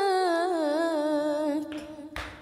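A single voice sings a wordless vocal line: a held note that slides down in pitch with a wavering ornament, then fades out near the end.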